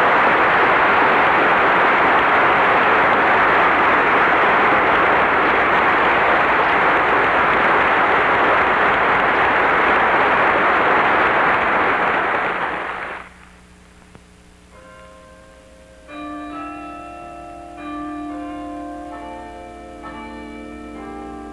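A lecture-hall audience applauding steadily, cutting off about thirteen seconds in. A few seconds later, bells begin ringing several different notes as closing-title music.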